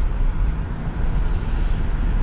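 Road noise inside a moving Ford Transit van: a steady low rumble of engine and tyres.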